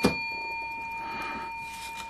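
A bell-like metallic ring dying away slowly, with a sharp click at the very start.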